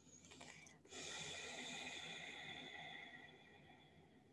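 A woman's long, slow exhale, starting about a second in and fading away over a couple of seconds.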